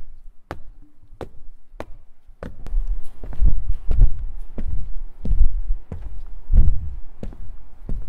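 Footsteps of boots on a hard floor: evenly spaced sharp heel strikes, joined by heavier low thuds about two and a half seconds in as the steps grow louder.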